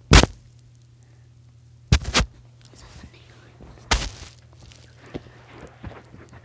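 A few sharp thumps a couple of seconds apart, including a quick double thump about two seconds in: a soccer ball being kicked and handled on a carpeted floor during a ball trick.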